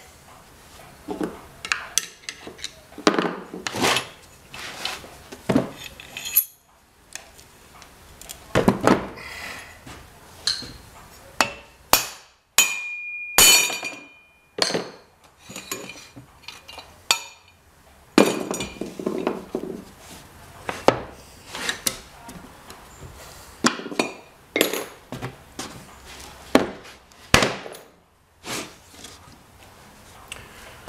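Metal parts being handled and set down on a wooden workbench: irregular clinks and knocks as a steel shaft and cast-iron plate are taken off freshly poured babbitt bearing blocks, with one short metallic ring about halfway through.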